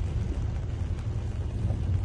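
Steady low rumble of road traffic moving slowly through floodwater, with wind on the microphone.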